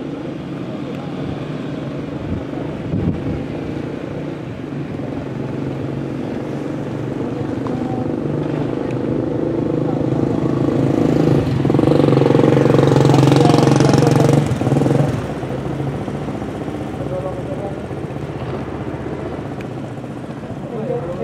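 Engines of stopped trucks and buses idling with a steady low hum. The hum grows louder from about eight seconds in, is loudest from about eleven to fifteen seconds, then drops back.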